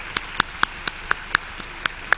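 Sparse audience applause: a few distinct hand claps, about four a second, over a faint haze.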